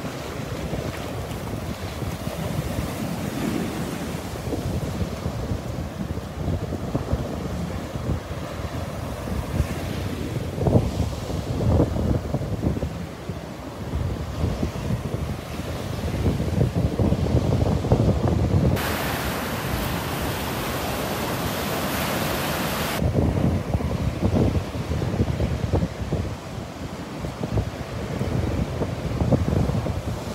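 Gulf of Mexico surf breaking and washing up the beach, with wind buffeting the phone's microphone in gusts. About two-thirds of the way through, a hiss sets in abruptly, lasts about four seconds and cuts off just as abruptly.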